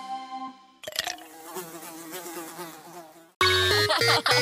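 Cartoon buzzing of flies: a wavering buzz lasting about two and a half seconds, after the last notes of a song die away. Loud, bright children's music cuts in suddenly near the end.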